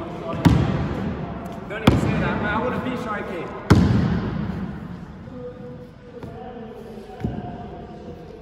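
A basketball bouncing on a sports hall's wooden floor: four separate bounces at uneven gaps of one to two seconds, the last one weaker, each followed by the hall's echo. Voices talk between the bounces.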